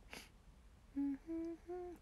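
A young woman humming three short notes, each a little higher than the last, starting about a second in, after a brief breathy puff at the start.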